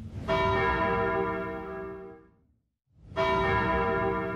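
A bell struck twice, about three seconds apart, each strike ringing out and fading away, with a moment of silence between them.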